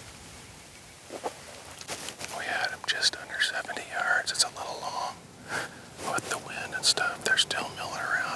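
A man whispering in short phrases, starting about two seconds in, over a faint steady hiss.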